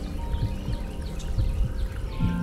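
Soft ambient meditation music with steady sustained tones, with short bird chirps over it.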